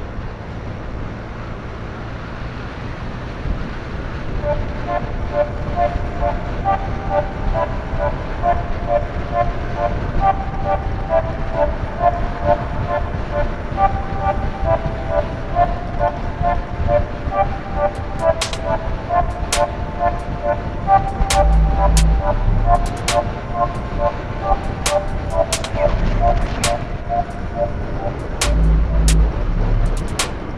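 Moped riding along at speed, its engine and the wind making a steady rush. From about four seconds in, a long run of short beeping notes at shifting pitches, almost like a tune, goes on over it. In the second half come scattered sharp clicks and two low bumps.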